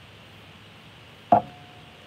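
A single sharp knock of a hard object a little past halfway, with a short ringing tone that dies away within about half a second, over faint room noise.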